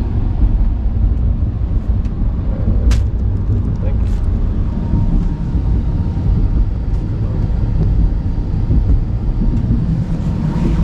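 Steady low rumble inside a sleeper train carriage, with a few sharp clicks about two, three and four seconds in.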